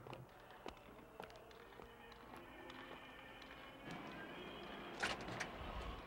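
A glass-paned street door being opened and pushed through, with a cluster of sharp clicks and a knock about five seconds in, over faint city street ambience.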